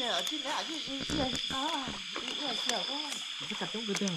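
A steady, high-pitched chorus of night insects drones throughout, with quiet voices talking over it.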